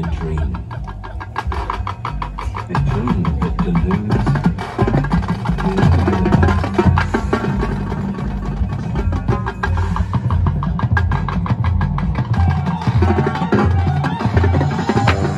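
High school marching band playing a percussion-heavy passage: quick, dense drum strokes over steady low brass notes.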